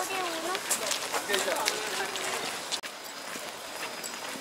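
Voices of passers-by talking outdoors, with scattered sharp clicks and knocks. The sound drops out abruptly just before three seconds in and gives way to a steadier outdoor background.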